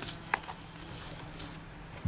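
Pages of a paperback book being turned by hand, with one short, sharp paper flick about a third of a second in, over a faint low hum.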